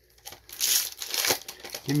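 Foil Magic: The Gathering booster pack wrapper being torn open and crinkled by hand. The crackling starts about half a second in, is loudest at first, and goes on for about a second and a half.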